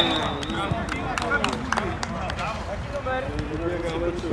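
Footballers' and spectators' voices calling and shouting across an outdoor pitch, with no clear words, and a few short sharp knocks among them.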